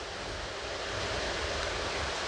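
Steady, even hiss of background noise (room tone), with no distinct event in it.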